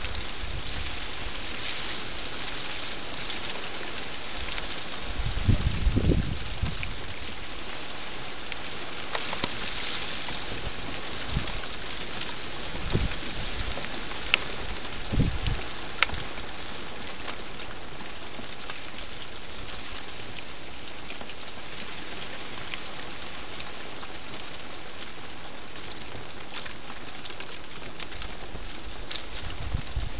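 A hedgehog eating inside a feeding box: a steady crackly chewing and crunching, with a cluster of low bumps about six seconds in, a few more around the middle, and two sharp clicks.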